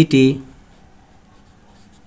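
A pen writing on paper: faint, short scratching strokes as letters are drawn, after a single spoken syllable at the very start.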